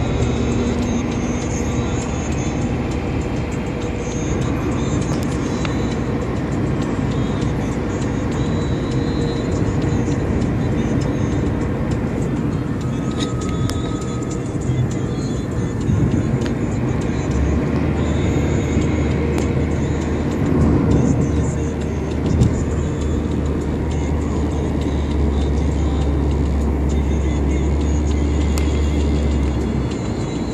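Steady road and engine noise of a moving car, heard from inside the car, with music playing over it.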